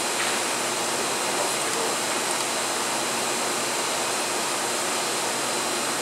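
Steady, even hiss with no breaks or changes in level.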